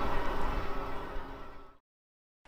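Riding noise from a fat-tyre e-bike on a paved path, wind and tyre hum, fading steadily away and dropping to dead silence near the end.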